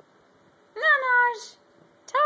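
A small dog gives one high-pitched whining call, a little under a second long, that rises briefly and then sags in pitch.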